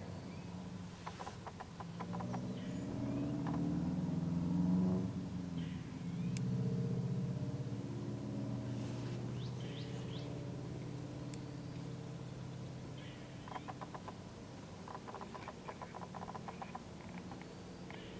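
A motor vehicle passing: a low hum that swells over the first few seconds and slowly fades, with short runs of rapid ticking about a second in and again near the end.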